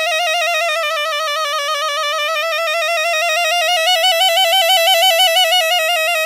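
Hichiriki, the Japanese double-reed bamboo oboe, holding one long note with a regular vibrato, the pitch rising slightly around the middle and falling back near the end.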